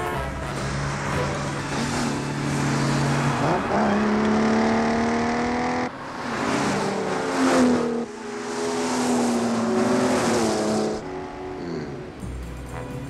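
Car engines revving hard through the gears as one car overtakes another at speed. The pitch climbs, drops at each shift about six and eight seconds in, and climbs again until near the end. Film music sits underneath.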